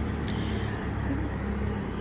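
Pickup truck driving past, a steady low rumble of engine and tyres.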